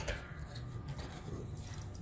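A short click as a SATA cable connector is pressed onto a 2.5-inch laptop hard drive, followed by quiet light handling over a low steady hum.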